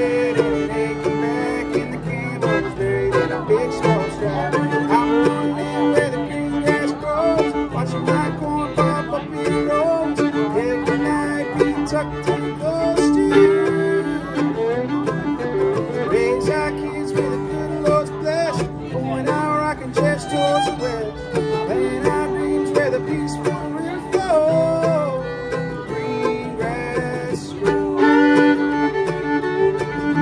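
Acoustic bluegrass trio playing an instrumental break, with the fiddle taking a bowed lead of sliding notes over a strummed acoustic guitar and mandolin.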